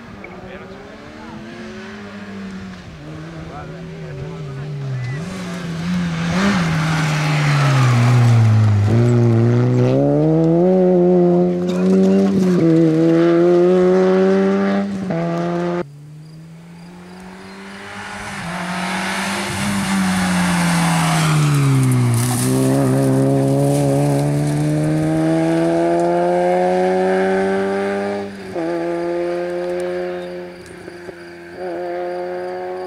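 Peugeot 106 N2-class rally car's engine at full effort on a tarmac stage. Its note drops as it brakes and shifts down, then climbs through the gears with short breaks at each upshift. This happens twice: the first pass cuts off abruptly about halfway through, and a second pass follows with the same drop and long climb.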